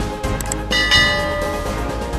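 A short bright bell chime rings out and fades about three-quarters of a second in, just after two quick clicks: a notification-bell sound effect over steady background music.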